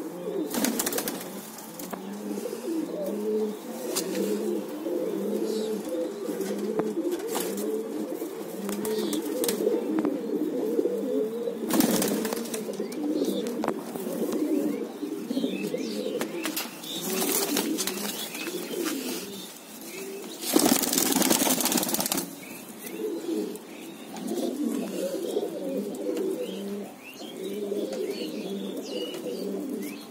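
Several white domestic pigeons cooing over and over, steadily throughout, with a few short bursts of wing flapping; the longest and loudest flapping lasts about a second and a half, about two-thirds of the way in.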